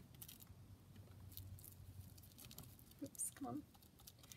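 Hands pressing and smoothing glued lace trim down onto a paper pocket: faint rustling and soft taps, with a short murmur of voice about three seconds in.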